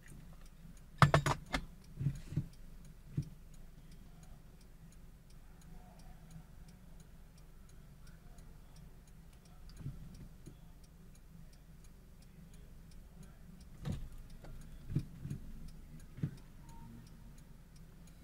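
Faint, rapid, regular ticking over a low steady hum, broken by a few soft knocks, the loudest a short cluster about a second in.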